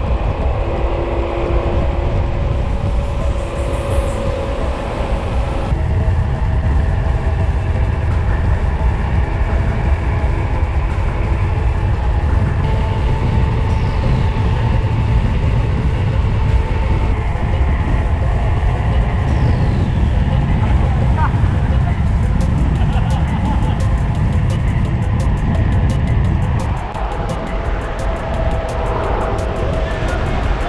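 Steady wind noise on the bike-mounted camera's microphone as a mountain bike rolls fast down a paved road, with music of held notes that change every few seconds playing over it.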